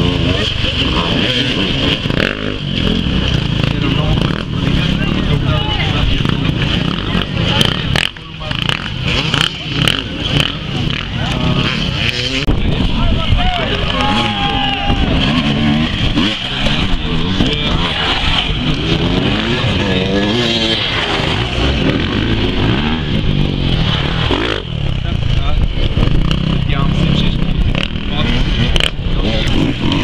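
Enduro motorcycle engines revving up and down as the bikes ride the course, with people talking nearby.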